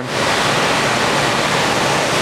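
Steady rushing of water circulating through a large aquarium, with a faint low hum underneath.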